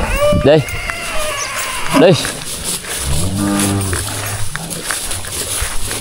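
A cow mooing: one long, low call that begins about three seconds in and lasts more than two seconds.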